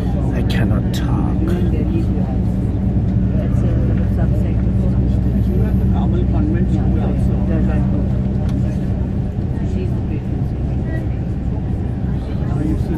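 Steady drone of engine and road noise heard from inside a moving road vehicle at highway speed, with indistinct voices of passengers in the background.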